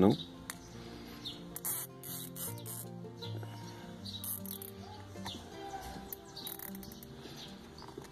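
Soft background music with held notes throughout, with a few short rasping clicks as a nylon zip tie is pulled tight around a gear-lever boot.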